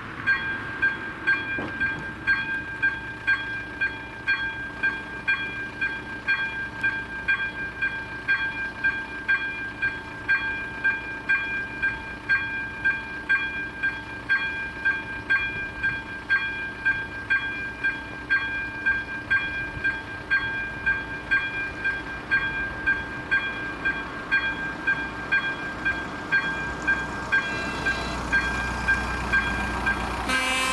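Electronic warning bell of an activated Czech level crossing, an AŽD 97 installation, ringing a steady, even ding a little under two times a second. It signals that a train is approaching. Near the end, the low rumble of the approaching train rises under the bell.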